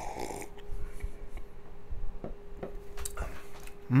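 A man sipping beer from a glass: a slurping sip at the start, then quiet swallows and small clicks, and a light knock as the glass is set down on the bar near the end. A faint steady hum runs underneath.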